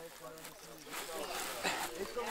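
Straw bale rustling and scraping as it is levered upward into a timber frame with wooden poles, with a few short crackles, under faint low voices.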